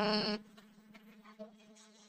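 A voice finishes a phrase in the first half-second, then near silence with only a faint steady hum.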